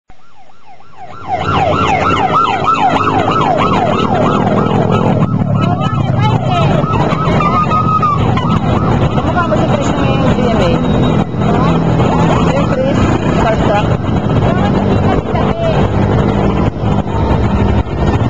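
Police motorcycle escort sirens yelping, a fast rise and fall about four times a second, starting about a second in, over the running motorcycle engines; after about five seconds several siren sweeps overlap less regularly.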